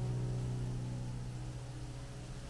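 Background piano music: a held chord slowly fading away.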